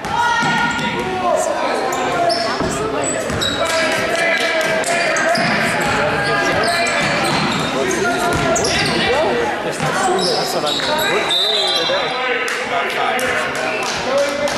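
Basketball dribbled on a hardwood gym floor in live play, with many sharp bounces, amid players' and spectators' voices that echo through the gymnasium.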